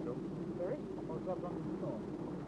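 Faint, indistinct voices over a steady low hum on the live-sound track of a dual-track Super 8 film.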